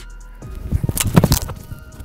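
A football being place-kicked off a holder's hold: a few quick strikes of the approach, then the sharp thud of the kicking foot meeting the ball about a second in, over background music.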